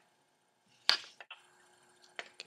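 A single sharp click about a second in, then a couple of faint taps: the metal bottle cap, with its split ring attached, being put down on the table.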